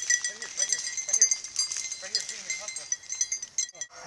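Beagles baying in short, repeated yelps about twice a second: the hounds opening on a freshly jumped rabbit's track. A high metallic jingling rings on throughout.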